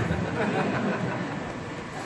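Steady background noise of a seated gathering heard through its microphone and loudspeaker system, slowly getting a little quieter.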